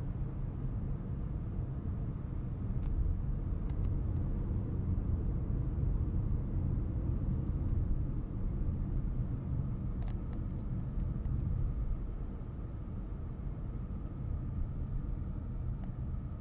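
Steady low road and engine rumble inside the cabin of a moving car, with a few faint clicks.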